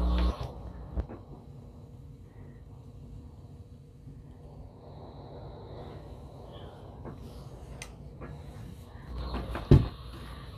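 Steam iron pressed and slid over a cotton waffle-weave towel and fabric, with faint rubbing. A low hum cuts off just after the start, a click comes about a second in, and a single knock near the end is the loudest sound.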